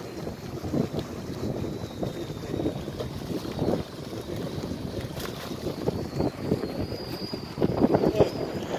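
Gusty wind noise on the microphone over the wash of sea water, an uneven rumble with no distinct events.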